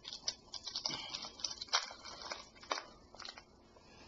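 Plastic candy wrapper crinkling and crackling in quick, irregular clicks as it is worked open by hand, dying away after about three seconds.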